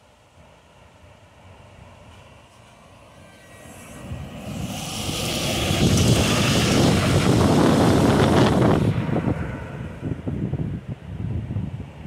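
Regional bus driving up and passing close by: its engine and tyre noise build over several seconds to a peak as it goes past, then fall away suddenly, leaving uneven low rumbling.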